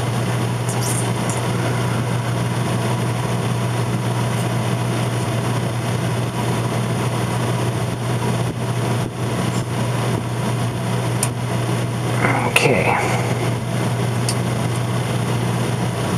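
Steady low hum with an even background hiss, with a few faint clicks as a metal vernier caliper is handled.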